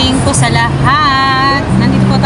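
Background music: a song with a sung, gliding melody over held low notes.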